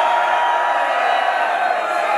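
Large concert crowd cheering, a steady wall of many voices.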